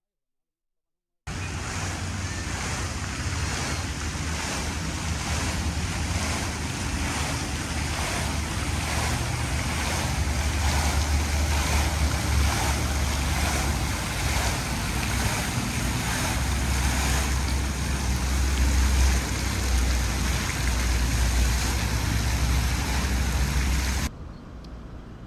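Fountain water jets splashing steadily, starting about a second in, with wind rumbling on the microphone.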